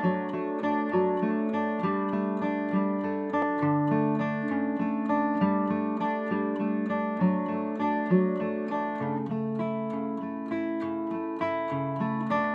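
Background music: an acoustic guitar playing a picked instrumental intro, a steady run of plucked notes.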